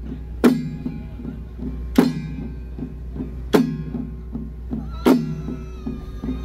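Ritual percussion from a Taiwanese xiaofa troupe: octagonal hand drums on handles, tapped softly in a quick steady pattern, with a loud accented strike about every second and a half. Each strike rings on with a dropping pitch, four of them in all.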